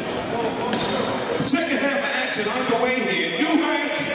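Basketball bouncing on a gym floor during play, a few sharp bounces among a steady din of voices and shouts echoing around the gym.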